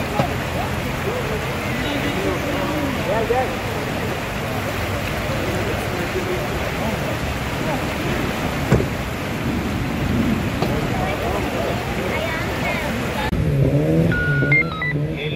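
Steady rushing noise of heavy rain and floodwater on a city street, mixed with idling traffic and faint voices in the background; the sound changes abruptly near the end.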